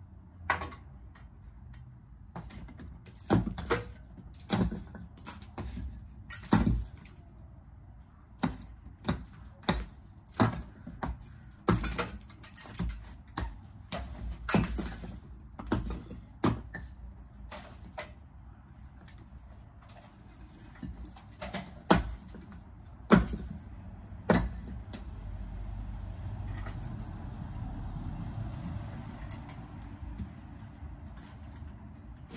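Old brick wall being broken up by hand: an irregular series of sharp knocks and cracks, about one a second, as bricks and mortar are struck and knocked loose from the top of the wall. Near the end the knocks stop and a steadier rushing noise takes over.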